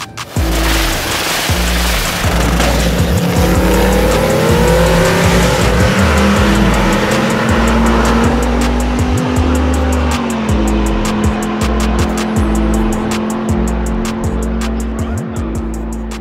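A drag-racing car running hard, with background music and a heavy bass beat laid over it. The sound comes in abruptly about half a second in and stays loud.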